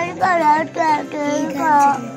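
A young girl's high-pitched voice in a sing-song, four drawn-out syllables one after another.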